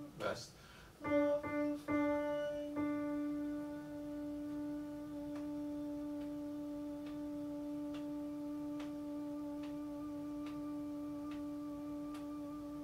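Yamaha digital keyboard playing a few short notes of a vocal line, then holding one steady mid-range note for about ten seconds, with no fading. Faint light ticks about once a second run under the held note.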